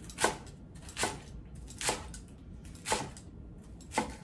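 Chef's knife shredding a head of iceberg lettuce on a wooden cutting board: a short cut about once a second.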